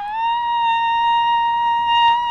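A man's voice holding one long, high falsetto note, rising slightly at first and then steady in pitch.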